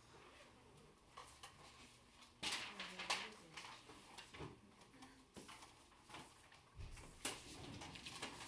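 Room noise of a quiet classroom during seatwork: scattered small clicks, knocks and shuffles, the louder ones about two and a half and three seconds in and a sharp click near the end.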